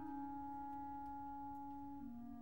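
Closing bars of an orchestral song: the orchestra holds soft, steady chords after the soprano has stopped. The lowest note steps down slightly right at the start and again near the end, and the sound slowly fades.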